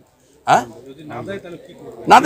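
Near silence for about half a second, then a pigeon cooing, quieter than the surrounding talk.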